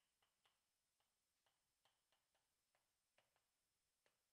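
Faint, irregular taps and short scratches of chalk on a chalkboard as words are written, about three clicks a second, over near silence.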